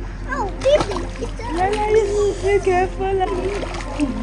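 Water splashing in a swimming pool as small children play in it, with a young child's high voice calling out without clear words.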